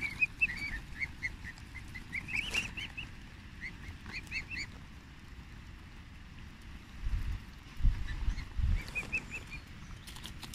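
Swan cygnets peeping in short, high chirps, in runs near the start, in the middle and again near the end. A few low thumps come about seven to nine seconds in.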